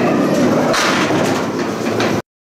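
Candlepin bowling ball rolling down a wooden lane with a steady rumble. A brighter clatter of candlepins being knocked down joins in under a second in.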